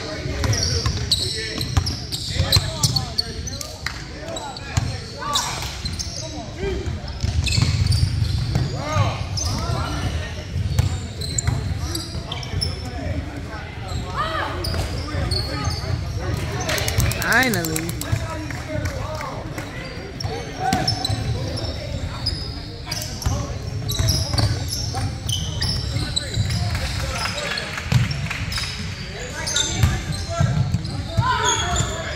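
Basketball game sound in a gym: a ball bouncing on the hardwood court amid sharp footfall impacts, with voices calling out from players and spectators, all echoing in the large hall.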